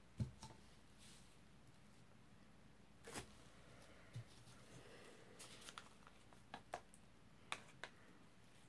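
Quiet handling of plastic paint cups on a table: a soft thud just after the start as a cup is set down, then scattered light clicks and taps as cups are moved and picked up.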